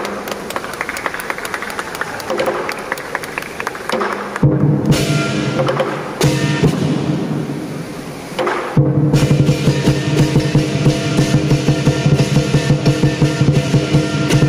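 Live southern lion dance percussion: the lion drum beaten with clashing hand cymbals. It plays more softly for the first four seconds or so, then loud from about four and a half seconds in, drops back briefly just before nine seconds, and then drives on in a steady, even pulse.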